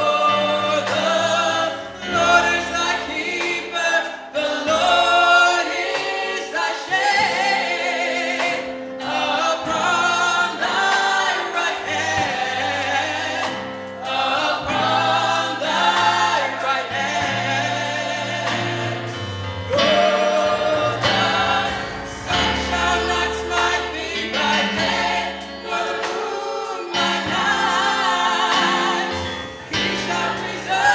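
Gospel choir singing, with a lead singer at the front microphone.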